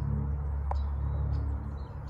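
Outdoor riverside ambience: a steady low rumble with a few faint bird chirps, and one short click about two-thirds of a second in.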